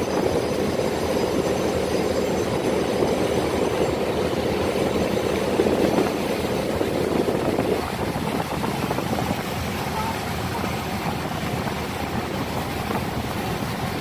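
Small boat's engine running steadily while under way, with water rushing past the hull; the sound eases a little about eight seconds in.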